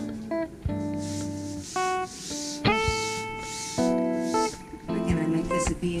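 Guitar music: a run of single plucked notes, each ringing on and fading before the next.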